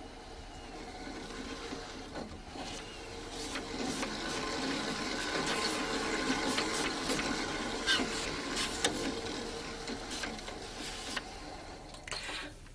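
A steady mechanical whirr with a few held tones and scattered clicks, growing louder through the middle and easing off near the end.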